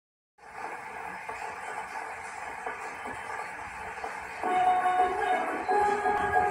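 Stylus tracking the lead-in groove of a gramophone record: surface hiss with faint crackle for about four seconds, then the recorded music starts with louder held notes.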